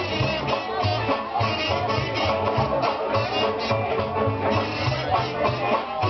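Live jug band playing an upbeat old-time tune: two banjos and an acoustic guitar strummed over a steady plucked washtub-bass pulse of about two beats a second, with washboard rhythm on top.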